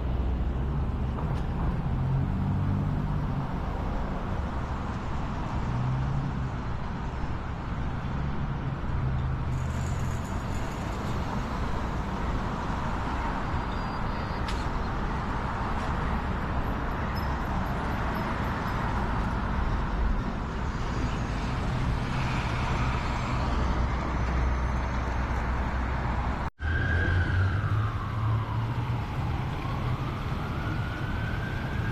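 City road traffic: vehicles running and passing with a steady low engine rumble and tyre noise. Near the end, after a brief dropout, a siren's wail falls and rises again.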